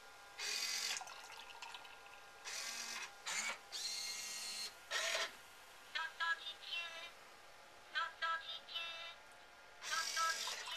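A beer-server robot's motors whirring in four or five short bursts as its arm tilts a cola can over a glass. Later come two short clusters of chirpy electronic sounds from the robot.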